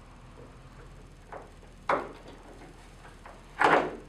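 A few short knocks and clicks from plastic paddleboard fin parts being handled against the board, with a louder scrape or knock near the end.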